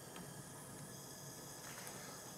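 Faint, steady hiss of a Bunsen burner running with its air hole opened to a blue heating flame.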